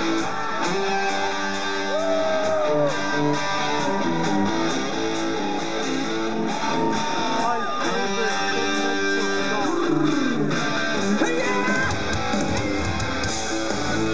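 Electric guitar played live through a concert PA, picking out a rock song's opening riff on its own. Near the end, a deep bass comes in underneath.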